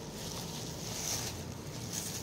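Rustling and crinkling of a crepe saree and the thin plastic sheet under it as they are handled and lifted, a little louder about a second in.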